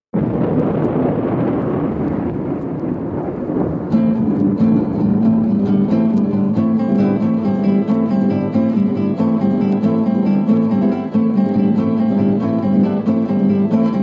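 A track begins abruptly after silence with about four seconds of loud, rushing noise without a clear pitch. Then an acoustic guitar intro comes in, playing plucked notes in a steady rhythm.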